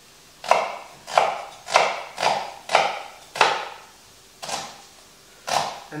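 Chef's knife chopping an onion on a wooden cutting board: about eight sharp chops, coming roughly every half second and then more slowly near the end.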